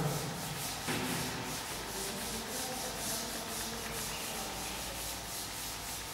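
Chalkboard duster wiping chalk writing off a blackboard, rubbed back and forth in quick, regular strokes.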